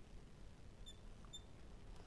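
Near silence with two faint, brief squeaks about a second in: a marker writing on a glass lightboard.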